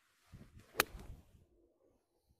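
A wedge shot played from a wet semi-rough lie: a short swish of the club through the grass, then one sharp click of the clubface striking the ball just under a second in. Wet grass is trapped between club and ball at impact, the kind of strike that takes spin off and gives a flyer.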